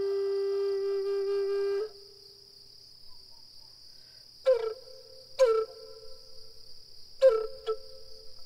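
A flute holds one long low note that stops about two seconds in; after a pause it plays four short notes, each with a sharp breathy start, over a steady high cricket trill.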